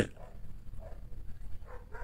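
A quiet pause with a few faint, short animal calls in the background.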